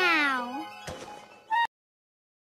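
A high, meow-like cartoon call slides down in pitch and turns up at the end, over faint music. It is followed by a click and a short blip, and then the sound cuts off abruptly.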